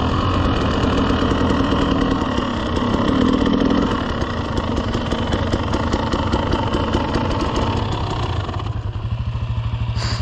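KTM 300 two-stroke dirt bike engine running at low speed as the bike slows on gravel. The throttle eases off about four seconds in, and near the end the engine settles into an even idle as the bike rolls to a stop.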